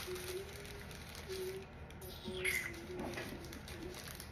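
A dove cooing: short, low, steady coos repeated about once a second. A brief rustle of plastic packaging being handled comes about halfway through.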